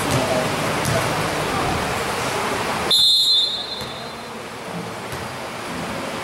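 Referee's whistle blown once about three seconds in: a short, shrill, high blast lasting about half a second, which stops play. Underneath is a steady murmur of crowd voices in the gym.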